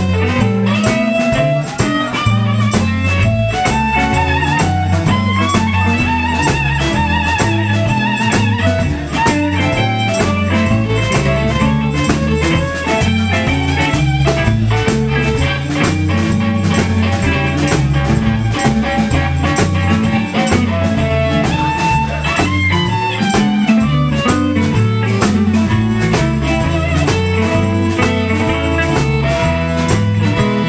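A blues band playing live: electric guitars, bass guitar and drum kit, with a melodic lead line wavering on top over a steady bass groove.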